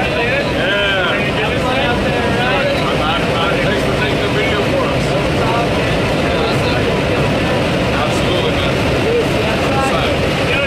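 Loud, steady drone of a skydiving jump plane's engine and airflow inside the cabin during the climb, with people's voices calling out over it near the start and again near the end.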